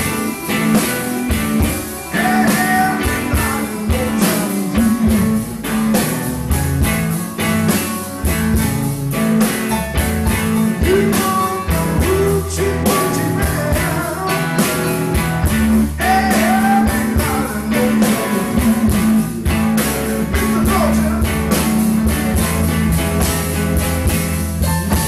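Live blues band playing an instrumental passage on electric guitar, electric bass, drum kit and keyboard over a steady drum beat. A lead line slides up in pitch twice, about two seconds in and again near the middle.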